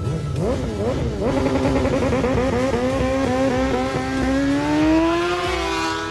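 Racing motorcycle engines revving in quick blips, then a bike accelerating hard through the gears, its pitch climbing in repeated steps with each upshift, and a long rising pitch near the end.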